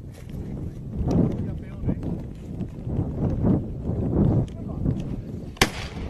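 Indistinct voices talking, then a single sharp shotgun shot near the end with a short echo after it.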